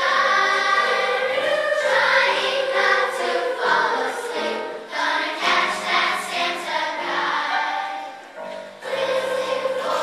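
Elementary school children's choir singing, with a short lull near the end.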